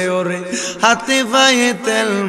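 A man chanting a Bengali munajat (devotional supplication) in a melodic, sung style into a microphone, holding long notes and sliding between pitches.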